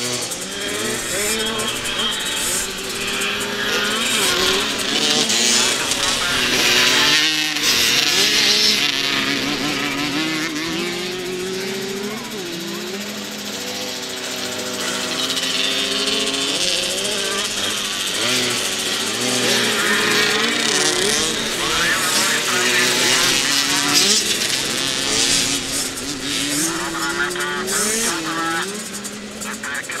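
Several small youth motocross bikes racing. Their engines rev up and down as they accelerate, shift and take the corners, and get louder as bikes pass close by.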